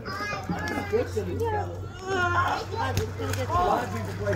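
Several people's and children's voices chattering and calling at once, none clearly in words, over a steady low hum.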